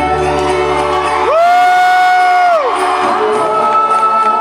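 Live band playing a slow song with a singer. About a second in, one loud voice glides up into a long held high note, holds it for about a second and a half, then falls away as the band's low notes drop out under it.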